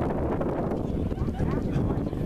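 Wind buffeting the microphone in a steady low rumble, with faint voices of people in the background.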